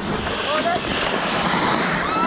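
Hockey skate blades scraping and carving on rink ice, a steady rushing hiss, with players' short shouts about half a second in.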